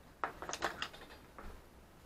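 A homemade wooden compass, made of scrap wood and a nail, set down on a workbench among other tools: a quick cluster of light wooden knocks and clatter, then one more knock about a second and a half in.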